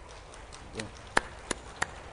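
Three sharp clicks about a third of a second apart in the second half, over a faint low hum.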